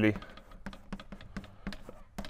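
Chalk tapping and scratching on a blackboard as symbols are written, a run of short, irregular clicks.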